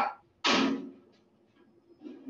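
Toaster oven door being pulled open: one sharp clack about half a second in, ringing briefly as the door drops to its open stop.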